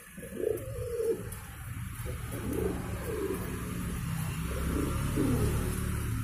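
Magpie pouter pigeons cooing: about five low coos, each with a rolling pitch.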